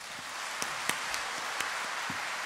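Audience applauding, building up quickly at the start and then holding steady as dense clapping.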